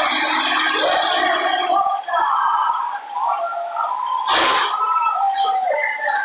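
Indistinct voices throughout, with a short, loud burst of noise a little past four seconds in.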